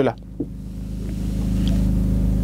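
A low, steady engine drone that slowly grows louder.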